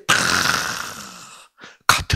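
A man's long, breathy exhalation, like a sigh, blown close into a handheld microphone and fading away over about a second and a half.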